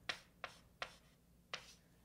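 Handwriting on a board: four sharp taps of the writing tip, the first three about a third of a second apart and the last after a longer gap, as a step of the working is written out.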